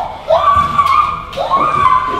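A man yelling in two long, high cries, each rising and then held, as he is pushed down and dragged in a scuffle.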